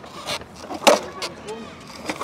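A skateboard's wheels rolling on concrete, with a few sharp clacks from the board; the loudest comes about a second in.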